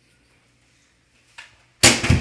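Near silence with a faint tap about one and a half seconds in. Near the end comes a sudden loud knock, a ball striking plastic water-bottle pins, and a shout starts up right after it.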